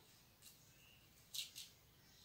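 Near silence, with a couple of faint short ticks of hands handling the ring light's parts: a slight one about half a second in and a clearer, crisp one about one and a half seconds in.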